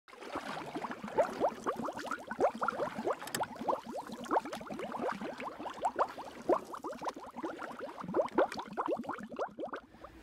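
Bubbling water: a steady run of short bubble blips, each rising quickly in pitch, several a second.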